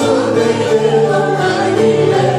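Live rebetiko song: voices singing together over plucked bouzouki, acoustic guitar and baglamas.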